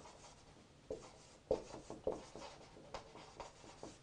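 Marker pen scratching and squeaking on a whiteboard in a run of short strokes as words are written.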